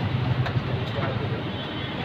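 Street background noise: traffic running steadily by, with a low hum and a few faint clicks.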